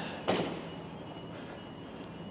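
Quiet urban street ambience, a low steady background noise, with a short burst of noise just after the start.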